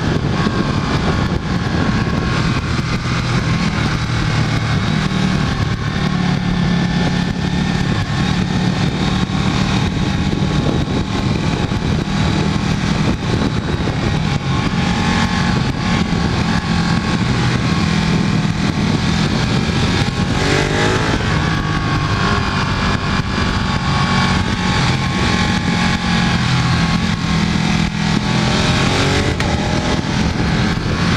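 Ducati 1299 Panigale S's Superquadro V-twin running hard at track speed, heard from on board over a steady rush of noise. The engine note shifts up and down in steps, with a sharp rising sweep about twenty seconds in and another near the end.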